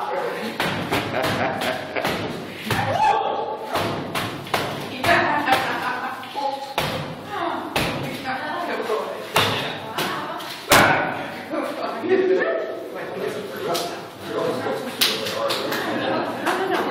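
Paint-loaded boxing gloves punching a canvas stretched on a wall: a run of irregular wet thuds and slaps, a few per second at times, with one especially hard hit about two-thirds of the way through.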